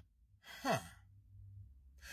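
A man's breathy, scoffing "huh": one short exhaled sound about half a second in, falling in pitch. A faint low hum follows.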